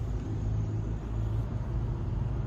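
Low, steady rumble of a car on the move, heard from inside the cabin.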